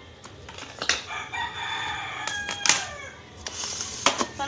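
A rooster crowing in the background: one long call of about two seconds that drops off at its end. Two sharp clinks of kitchenware cut across it, the louder one near the end of the crow.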